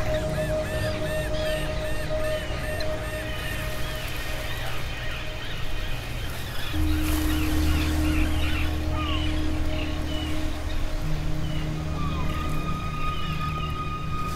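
Ambient background music: sustained low chords that shift about seven and eleven seconds in, with many quick high chirping glides over them.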